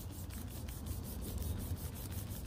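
Hand in a plastic Ziploc bag rubbing back and forth over a truck's painted hood, a fine, rapid scratching as the bag drags over bonded contaminants: the paint is pretty bumpy, badly contaminated.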